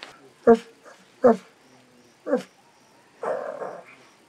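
A puppy yelping in three short, high cries about a second apart.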